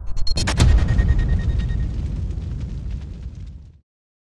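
Logo-sting sound effect: a sharp boom about half a second in, its rumble dying away over about three seconds and ending just before the close.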